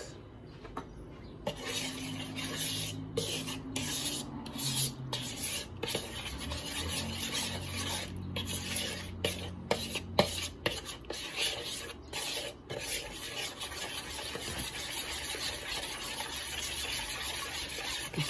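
Metal spoon stirring and scraping a runny flour, salt and water mixture around a plastic bowl: a steady rasping scrape that starts about a second and a half in, broken by brief pauses.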